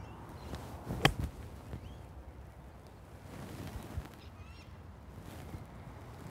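A golf club striking the ball on a pitch shot: one crisp click about a second in, over steady outdoor background noise.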